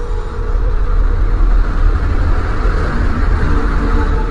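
A loud, deep rumble with a rushing noise over it that swells toward the middle: a dark drone-and-whoosh sound effect accompanying an animated skull graphic.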